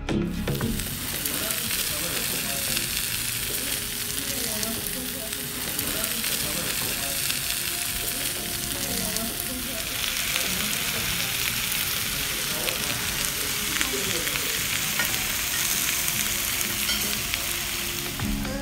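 Meat sizzling on hot cast-iron sizzler platters: a steady, dense hiss that grows brighter about halfway through.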